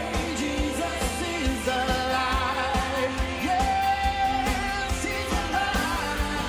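Live worship band playing an upbeat song of celebration: several voices singing together over a steady drum beat, with guitars and keyboard.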